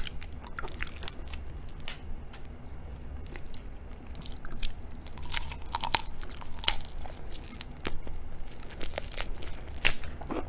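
Raw tiger prawn being handled and eaten close to the microphone: sharp cracks and crackles of the shell being pulled apart by hand, then biting and wet chewing of the raw prawn meat. A few louder cracks come around the middle and near the end.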